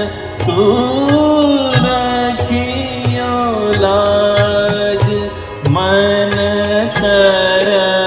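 Hindi film song performed in Raag Malkauns: a melodic line that glides between notes and then holds them, over a low rhythmic accompaniment.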